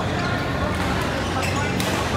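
Badminton rackets striking shuttlecocks in play: several sharp cracks, a few under a second apart, over voices in a busy hall.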